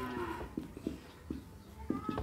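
A long held call, like the lowing of cattle, trails off about half a second in. After it come a few short taps and strokes of a marker writing on a whiteboard.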